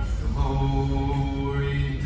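A man's voice singing or chanting long held notes at a steady pitch. One note lasts well over a second, starting about half a second in.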